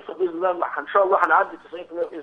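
Speech only: a man talking over a telephone line, the voice thin and narrow-sounding.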